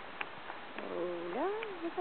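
Hooves clicking on a stony path, then from about a second in a drawn-out, sliding soothing call from the rider to a spooked horse.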